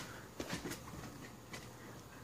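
Quiet room tone with a faint steady low hum and a few faint clicks.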